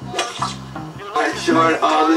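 Hip-hop song with a beat. A voice sings over it from about a second in.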